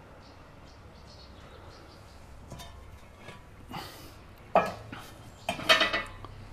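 A metal brimstone pan being handled: a few light clicks, then two loud clanks about four and a half and five and a half seconds in.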